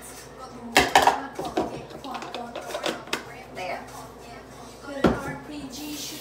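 Ice cubes and a plastic blender cup knocking and clattering as they are handled on a kitchen counter: two loud knocks about a second in, a few lighter ones, and another loud knock near the end.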